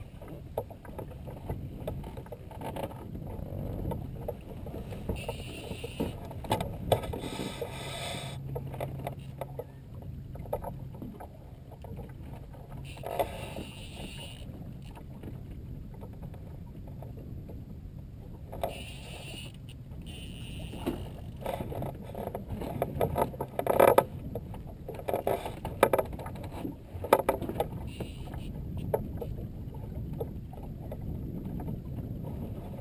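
Wind and water noise around a small open fishing boat on the bay, with brief louder rustling spells and several sharp knocks, the loudest about two-thirds of the way in.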